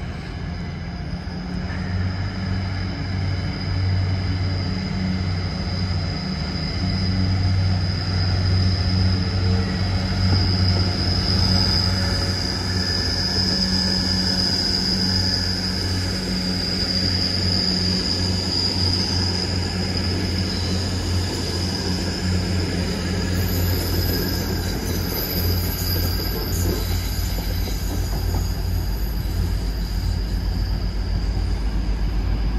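Grand Central Class 180 diesel multiple unit running past at low speed, its underfloor diesel engines giving a steady low drone with a steady high-pitched tone above it. The sound builds over the first ten seconds or so and then holds as the train moves on.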